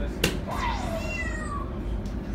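A soft-tip dart strikes an electronic dartboard with a sharp click about a quarter second in. The machine then plays a short sound effect of gliding and stepped tones falling in pitch.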